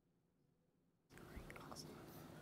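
Near silence, then about a second in a low room hiss comes up with faint whispering as children confer quietly over an answer.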